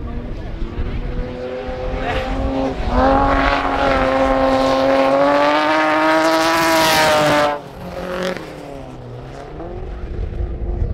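Folkrace cars' engines running hard at high revs as they race past on a dirt track, loud and holding a steady pitch for several seconds before cutting off abruptly about seven and a half seconds in. A quieter engine follows, its pitch dipping and then rising.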